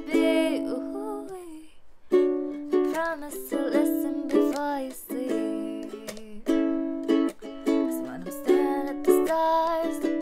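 Ukulele strummed in a steady rhythm of chords, with a woman singing over it in a small room. The strumming breaks off briefly about a second and a half in.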